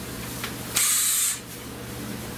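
A short burst of air hissing, about half a second long, from an air tool run against the transmission-to-engine bolts, beginning about three quarters of a second in.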